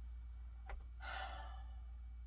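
A person sighs once, a short breathy exhale about a second in, with a faint click just before it. A steady low hum runs underneath.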